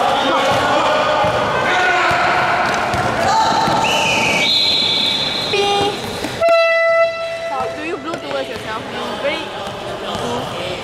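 Basketball game on a court: players' and onlookers' voices and a ball bouncing, then a loud horn blast of about half a second, about six and a half seconds in, as play stops.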